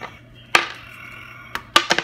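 Small plastic die thrown onto a tabletop: one sharp knock about half a second in, then a quick rattle of clicks near the end as it bounces and tumbles.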